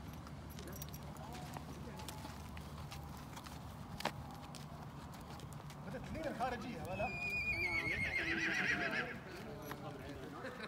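A horse whinnying: one long, wavering call that falls in pitch, starting about seven seconds in and lasting about two seconds.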